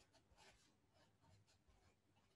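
Near silence, with faint scratching strokes of a felt-tip marker writing on paper.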